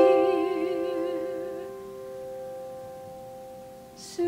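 A female singer holds a long note with vibrato over a sustained piano chord. Her voice stops about a second and a half in, and the piano chord fades away in the pause.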